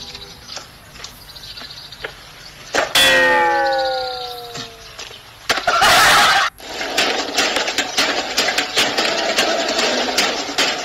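A loud sound effect whose pitch falls over about a second and a half, then a harsh noise lasting about a second that cuts off suddenly, followed by music with a steady beat.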